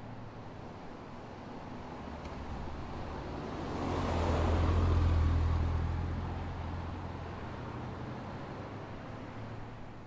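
A car passing by on the street, rising to its loudest about five seconds in and then fading, over a steady low outdoor traffic background.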